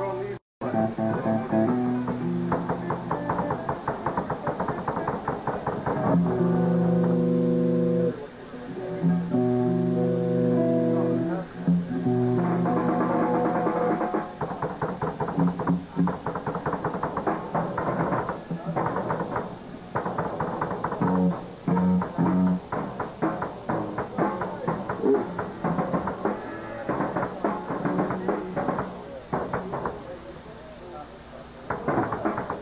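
Live band's amplified electric guitar and drums playing loudly, with two long held guitar chords about six and nine seconds in, heard through a muffled camcorder recording.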